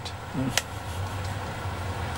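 Steady low rumble of a moving vehicle heard from inside its cabin, with a brief murmur and one sharp click about half a second in.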